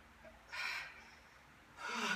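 A man's hard, noisy breaths, two of them about a second and a half apart, as he strains through seated dumbbell shoulder presses near muscle failure.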